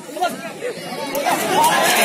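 Crowd of spectators shouting, many voices overlapping, swelling louder from about a second in.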